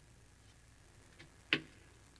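Quiet room tone broken by a faint tick and then, about one and a half seconds in, a single sharp click, such as a hard object tapped or set down.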